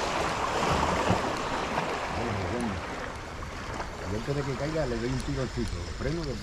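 Steady rush of sea water, with a man's voice talking indistinctly from about two seconds in.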